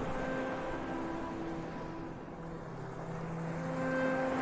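Ambient electronic music: soft, sustained synthesizer notes held over the wash of a recorded ocean-wave sound, which fades a little and swells again near the end.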